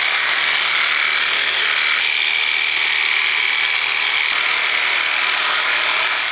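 Theragun percussive massage gun running against the thigh: a pretty loud, steady electric-drill-like buzz with a high whine over it, starting abruptly.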